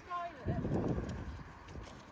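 A faint voice briefly near the start, then the soft, muffled footfalls of a horse trotting on a sand-and-rubber arena surface.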